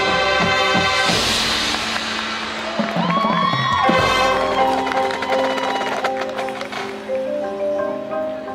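High school marching band playing its field show, with the front ensemble's marimbas and other mallet percussion prominent over sustained pitched tones. A bright cymbal-like wash swells about a second in, and sliding, bending tones sound around three to four seconds in.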